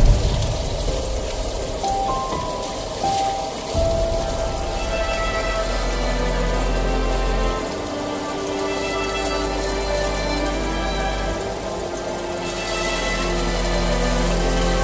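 Food sizzling in a hot frying pan, a steady hiss, with background music with held notes playing over it.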